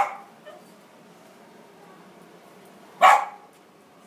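Small black-and-tan dog barking: one sharp bark at the start, a faint short one just after, and another loud bark about three seconds in.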